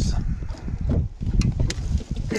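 Irregular soft thumps and knocks in a fishing boat as a just-landed smallmouth bass is grabbed and held down on the deck.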